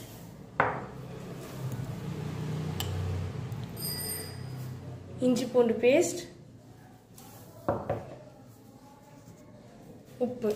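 A metal spoon knocking against small bowls as a spice paste is spooned onto raw prawns, with two sharp knocks, one near the start and one late. A low hum runs through the first half, and a brief voice sound comes about five seconds in.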